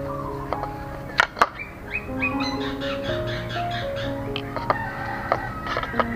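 Background music with a stepping melody over a few sharp clicks of a kitchen knife cutting through a mandarin's rind onto a plate. The two loudest clicks come close together about a second in.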